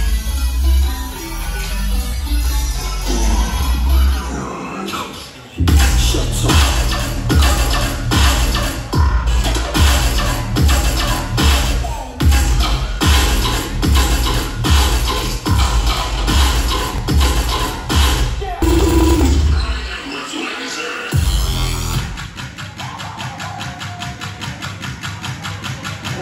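Loud electronic bass music from a DJ set played over a club sound system, with a heavy bass line and a pounding beat of about two hits a second. The bass drops out briefly about five seconds in, then drops out again after about eighteen seconds, giving way to a lighter passage with quick ticking percussion.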